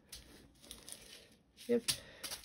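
Small plastic zip-lock bags of diamond-painting drills crinkling faintly as they are handled, with a few soft clicks and one sharper click near the end.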